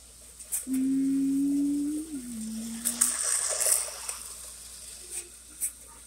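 O-gauge toy train running on tinplate track, with faint clicks and a light rushing noise. Near the start a steady held tone sounds for about a second, then steps down in pitch and holds for about another second before stopping.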